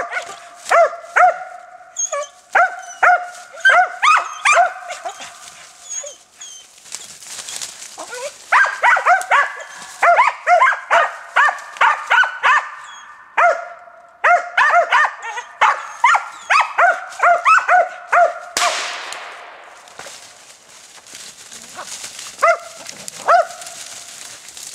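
Hunting dogs barking treed at the foot of a tree, a steady run of quick repeated barks with short pauses. About 18 seconds in a sudden rushing noise cuts across, and after it the barks come only now and then.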